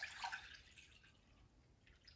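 Faint pouring of liquid from a glass measuring jug into a glass bowl. It is loudest in the first half second, then fades to a barely audible trickle.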